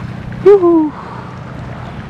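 A brief wordless vocal sound from a man, falling in pitch, about half a second in, over a steady low background noise.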